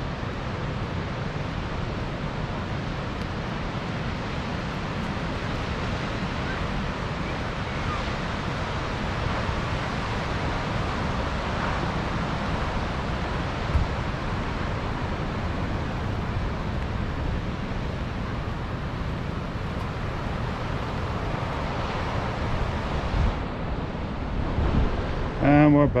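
Ocean surf breaking below the bluff with wind buffeting the microphone, a steady rushing noise. A voice comes in near the end.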